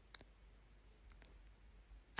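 Near silence, with one faint click just after the start and a few fainter light ticks after about a second, as a small circle of painted bubble wrap is lifted by hand.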